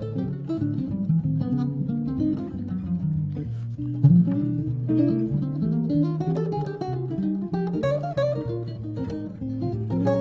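Two archtop jazz guitars playing together in a jazz improvisation over Rhythm Changes, with chords and single-note lines interweaving. A loud low note stands out about four seconds in.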